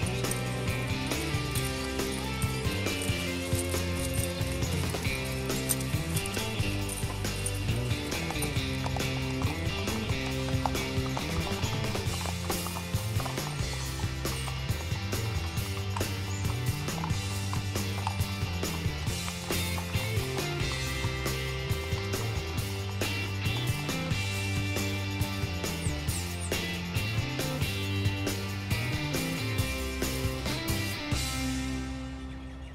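Background music with a steady beat, a stepping bass line and sustained chords.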